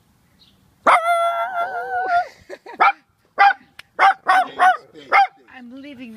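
Italian greyhound barking: one long, high, wavering bark about a second in, then a run of about six short, sharp barks.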